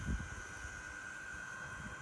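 Mammotion Luba 2 battery-electric robot lawn mower running on grass: a steady high-pitched motor whine, with a low rumble that is strongest near the start.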